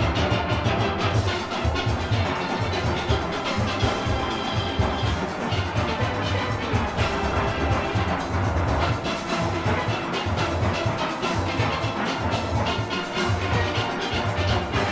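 A full steel orchestra playing: massed steelpans carry the melody and chords over the percussion section, with drum kit and congas keeping a steady, driving beat and deep bass pans pulsing underneath.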